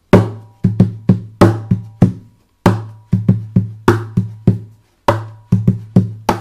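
Percussive drumming on the body of a Takamine acoustic guitar: the heel of the palm thumps the top for a booming bass drum, and lighter hits near the edge give a snare, in a repeating bass, snare, bass, bass, snare groove. The hits come in short phrases with brief pauses between them.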